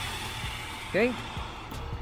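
Toyota Camry's air suspension valves venting air from the air springs as the car is lowered: a steady hiss that fades gradually as the bag pressure drops.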